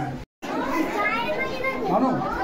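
Overlapping chatter of children's voices in a crowded room, following a brief total dropout at an edit a quarter-second in.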